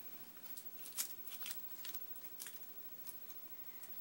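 Faint, scattered crinkles and taps of hands handling crescent-roll dough on a foil-lined baking sheet.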